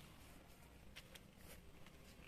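Near silence: faint background hiss with a few soft clicks about a second in.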